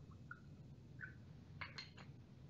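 Faint pouring of hydrochloric acid from a glass reagent bottle into a small glass beaker: a few soft, short pitched drips in the first second, then a couple of light clicks near the end as the bottle's cap is handled.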